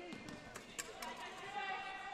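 A basketball bounced a couple of times on a hardwood court by a player preparing a free throw, each bounce a faint sharp smack. A faint, held, pitched voice-like tone carries through the second half.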